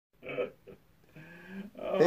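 A few short, faint vocal sounds, one brief and a held low hum, leading into a man starting to speak near the end.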